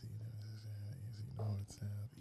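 Quiet, muttered speech close to a microphone, much softer than the surrounding talk.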